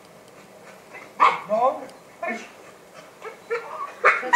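A dog barking a few short times, played back from a training video over loudspeakers in a lecture room.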